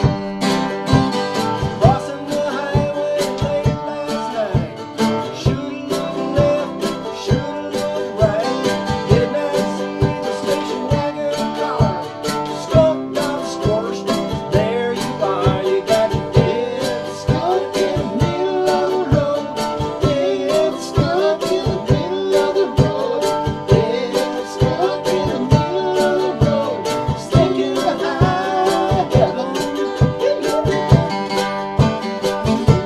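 Mandolin and acoustic guitar strumming a country tune together, with a bending melody line carried over the chords.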